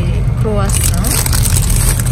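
Steady low rumble of a car running, heard from inside the cabin, with a short spoken syllable about half a second in.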